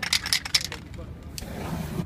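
Aerosol spray-paint can let off in a quick run of short hissing bursts for the first second or so, then a quieter stretch.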